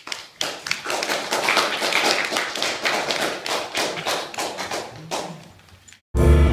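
Audience applauding: a few claps first, then steady applause that thins out and dies away near the end.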